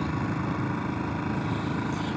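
Royal Enfield Classic 500's single-cylinder engine running steadily while the motorcycle cruises, with road and wind noise.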